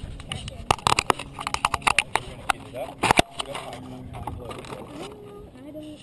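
Close handling noise: a flurry of sharp clicks, knocks and rubbing from hands on the plane-mounted camera as the RC plane is picked up and set down on the grass, settling down about halfway through, with faint voices behind.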